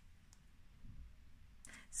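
Faint clicks of a playing-card-sized tarot card being handled and drawn from a deck, with a soft low thud about a second in.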